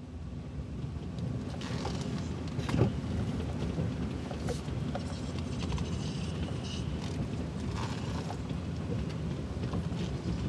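Car rolling slowly along a dirt driveway, heard from inside the cabin: a steady low engine and tyre rumble with scattered clicks and crackles, and one sharp knock about three seconds in.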